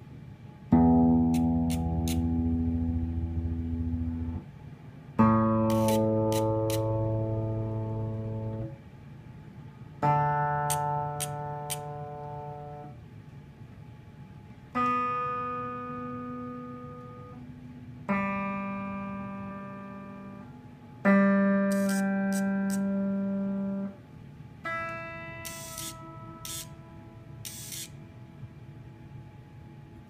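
Open strings of an electric Gibson Les Paul plucked one at a time, seven notes a few seconds apart, each ringing and fading, the first one low and the later ones higher. The Min-ETune robotic tuner on the headstock is tuning each string, with short high buzzes from its motors turning the pegs shortly after each pluck.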